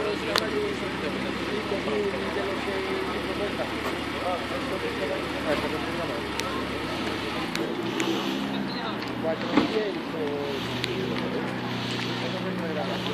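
Crowd chatter with car engines running at low speed underneath. A deep rumble fades out about three-quarters of the way through and a steadier hum takes over. A few short sharp clicks come in between.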